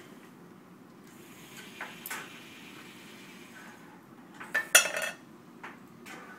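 A small wooden cube lands in an empty tin can with a metallic clatter about four and a half seconds in, the loudest moment, after a couple of light clicks around two seconds. The cube is being sorted into the can by a SCORBOT-ER4u robot arm's gripper.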